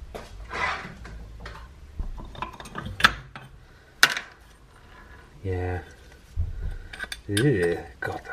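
Small metal carburettor parts being handled and put down on a workbench and into plastic parts trays, clinking and clicking irregularly, with two sharp clinks about three and four seconds in.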